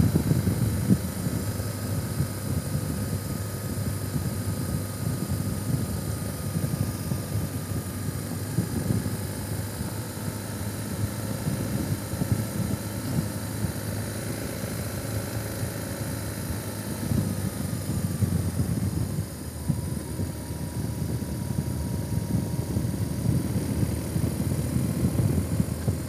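Motorcycle under way, with a steady rumble of wind on the microphone and a faint engine whine that drops a little in pitch about two-thirds of the way through.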